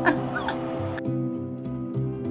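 A woman laughing in short cackling bursts over background music; the laughter stops about a second in and the music continues alone with a repeating low note.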